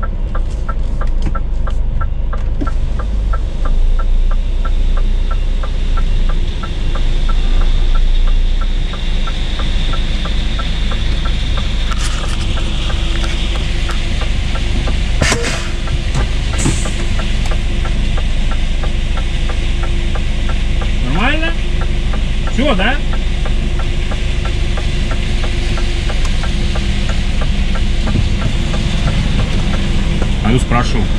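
Scania S500 truck's V8 diesel engine running at low speed as the truck moves slowly, a steady low drone heard from the cab.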